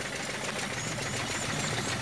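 Field Marshal 10 HP Lister-type diesel engine running under load, belt-driving a flour mill that is grinding wheat: a steady mechanical running noise.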